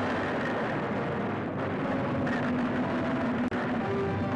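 A tank's engine running, a dense, steady mechanical noise.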